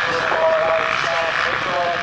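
A pack of motocross bikes racing past together, several engines running at once at different pitches, their notes holding and then rising and falling as the riders work the throttles.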